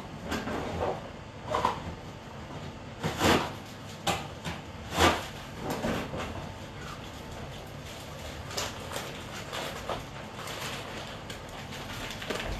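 Someone moving about out of sight and handling things: about a dozen short knocks and rustles at irregular intervals, the loudest around three and five seconds in.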